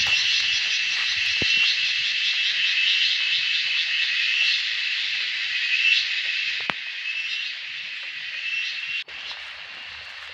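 A dense, shrill chorus of insects, finely pulsing and steady, in a forested coffee plantation. It drops abruptly to a quieter level about nine seconds in.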